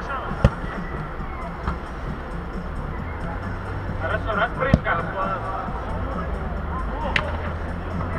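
Football being kicked on artificial turf in a large, echoing indoor hall: a sharp thud about half a second in, the loudest sound, and further kicks near five and seven seconds, over a steady low rumble, with players shouting in the distance.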